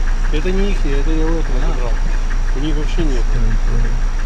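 A BMW car's engine idling with a steady low hum, heard from inside the cabin under a person's voice.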